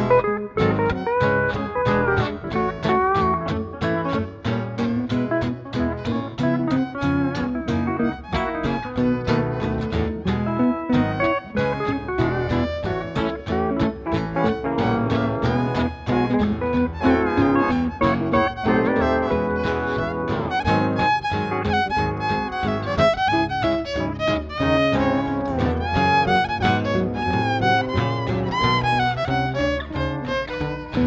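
Western swing band's instrumental break: a pedal steel guitar takes a solo with gliding notes over rhythm guitar and upright bass, with fiddle also heard.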